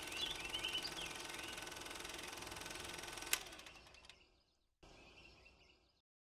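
Faint bird chirps over a low steady hiss, with a single sharp click a little past halfway, after which it fades to near silence.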